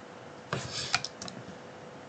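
A few short, sharp clicks from a computer keyboard and mouse as components are placed in software: a quick cluster about half a second in, then single clicks near one second and a little after, over a faint steady hum.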